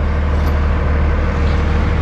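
Idling diesel engine of a Kenworth W900L semi truck (Cummins ISX), a steady low rumble.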